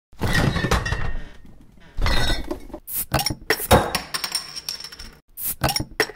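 Glass clinking and clattering in a series of separate bursts, each with a short ringing tail; the loudest come about a second in, around two seconds in and just before four seconds.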